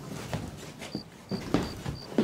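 Footsteps walking indoors: several separate steps, roughly half a second apart. A short high chirp repeats about three times a second behind them.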